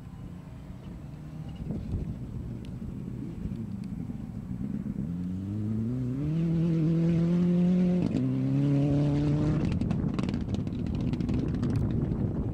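Rally car's engine accelerating hard as it passes, its pitch climbing for about three seconds. The pitch drops sharply at an upshift about eight seconds in, then climbs again and gives way to a rough crackling noise near the end.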